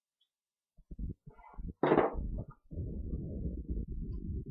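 A cigar lighter being worked in the cold: a few soft clicks about a second in, a sharper snap just before the two-second mark, then a low steady rush as the flame is held to the cigar. The lighter keeps going out because it is too cold.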